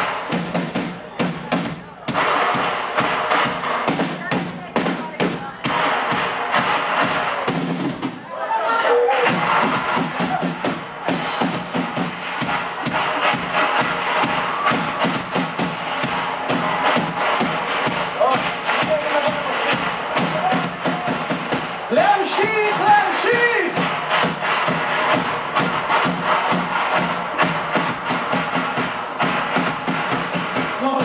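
A live band playing a drum-driven rhythm, with a crowd joining in and voices shouting or singing over it.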